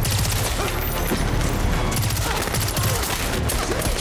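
Sustained rapid automatic rifle fire in an action film's gunfight: many shots in quick succession, a steady dense volley.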